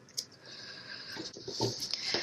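Scissors snip once through the stretch cord just after the start. Then comes a soft, rising hiss of hands brushing over the polyester screen mesh, with a few light rustles and ticks.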